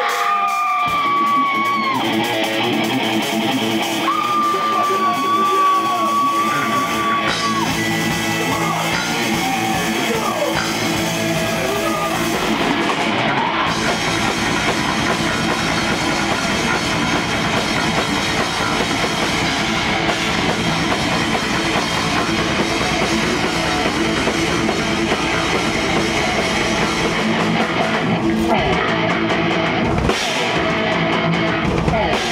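Thrash metal band playing live on a club stage through amplifiers: electric guitar with long held notes and little bass at first, then bass and drums come in about seven seconds in and the full band plays on, loud and steady.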